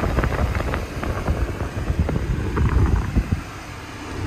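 Low rumbling noise buffeting the microphone, with scattered short knocks, easing off about three and a half seconds in.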